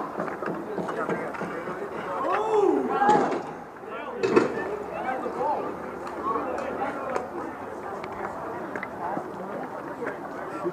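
Several people talking in the background, with scattered light clacks and one sharp knock about four seconds in.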